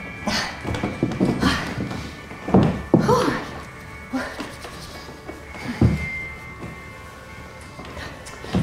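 A series of knocks and thunks, with a couple of louder knocks about two and a half and six seconds in, as a performer handles a metal crowd-control barrier and sits down by it on a stage floor. A faint, steady high tone runs under it.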